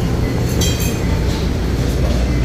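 Steady low rumble of restaurant background noise, with a brief clink of metal, like serving utensils, a little over half a second in.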